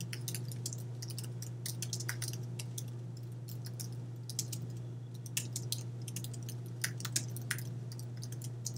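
Typing on a computer keyboard: irregular key clicks with short pauses between bursts, over a steady low hum.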